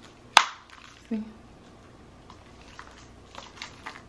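A gold-tone metal chain strap on a purse-style phone case being handled: one sharp click near the start, then a few faint light clinks later on.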